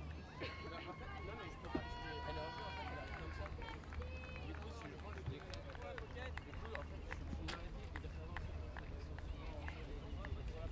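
Indistinct voices of several people calling out and talking, with one longer held call in the first few seconds, over a steady low hum and scattered clicks.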